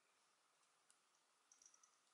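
Near silence: room tone with a few faint clicks, one about a second in and a short cluster near the end, from a metal crochet hook and yarn being worked by hand.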